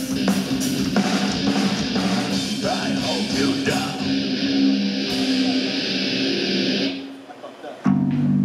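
Live heavy metal band, with distorted electric guitars, bass, drum kit and vocals, playing hard, then breaking off suddenly about seven seconds in; a held low guitar note rings back in near the end. The stop comes from a slip by the singer, who halts the song to start it over.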